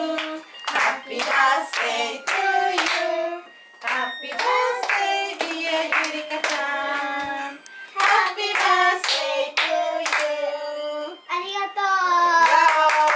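A small group of voices singing a birthday song together, with hands clapping along to it.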